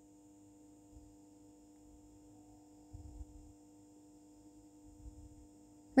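Near silence: a faint steady hum of room tone, with a few soft, low handling bumps.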